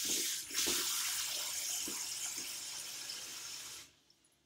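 Kitchen tap running cold water into the sink, with a brief dip about half a second in, then shut off abruptly near the end.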